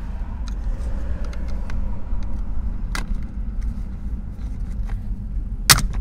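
Flat screwdriver prying at the plastic retaining catches of a steering-column clock spring, giving scattered small plastic ticks and taps, a sharp click about halfway and a louder sharp click near the end as a catch is released. A steady low rumble runs underneath.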